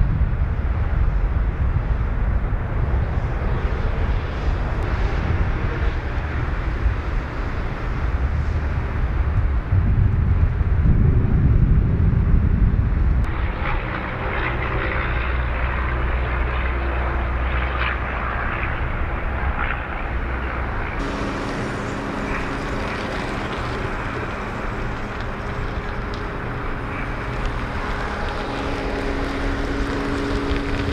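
Outdoor ambience dominated by low engine noise: a rumble that swells around ten to twelve seconds in. The sound then changes abruptly twice, settling into a steadier engine hum with a few steady tones.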